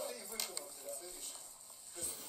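Faint, indistinct speech, with a couple of brief clicks about half a second in.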